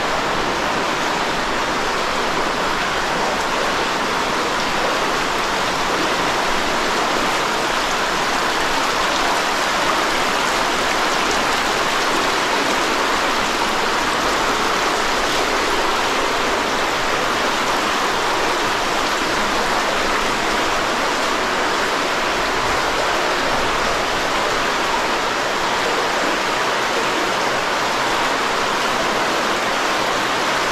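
Underground cave river rushing over and around rocks: a loud, steady sound of flowing water.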